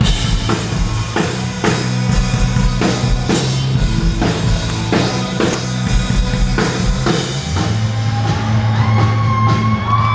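Live rock band playing loud, with the drum kit hitting about twice a second over a steady bass line. A long held note comes in over it in the last couple of seconds.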